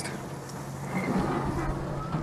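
Breaded bluegill fillets deep-frying in vegetable oil in a small pan: a steady sizzle.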